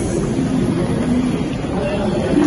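Busy airport terminal concourse ambience: indistinct voices of passing travellers over a steady low rumble.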